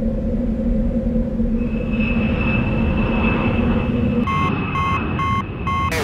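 A steady low rumble with a held hum, like a small aircraft cabin. About four seconds in, an electronic warning alarm starts beeping rapidly, about three beeps a second.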